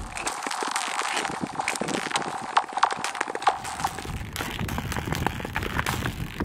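Ice skates gliding on thin, clear lake ice: a steady scrape and crackle of the blades. Short ringing pings sound through the ice, scattered over the first few seconds.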